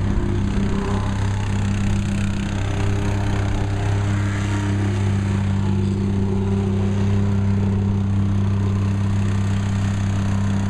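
An engine running steadily at a constant speed, giving an even low hum.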